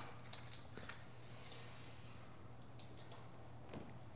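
Quiet gym room tone: a steady low hum with a few faint, brief clicks.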